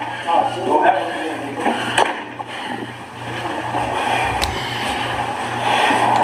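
Audio of a handheld phone recording of a scuffle, played back: muffled voices at first, then rustling and scraping noise with a low rumble, with a sharp click about four and a half seconds in.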